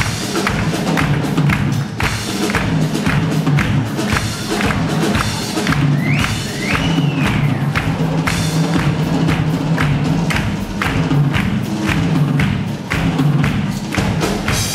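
A flamenco–Latin fusion band playing live, with drum kit, electric bass and flamenco hand-clapping (palmas) keeping a dense, driving rhythm. A single melodic line, likely trumpet, rises and falls about six seconds in.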